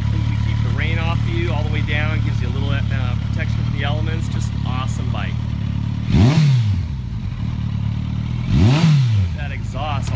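2008 Kawasaki Concours 14's inline-four engine idling through a Two Brothers aftermarket exhaust, blipped twice: about six seconds in and again near the end. Each rev climbs sharply and falls back to idle.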